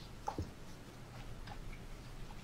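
A quiet pause: a few faint, short clicks over low steady background noise.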